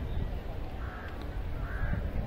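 A bird cawing twice, harsh calls less than a second apart, the first about a second in and the second near the end, over a steady low rumble.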